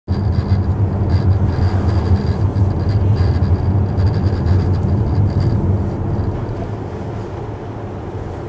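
A car driving along a country road, heard from inside the car: a steady low rumble of engine and tyre noise that eases a little over the last two seconds. A faint high whine comes and goes during the first five seconds.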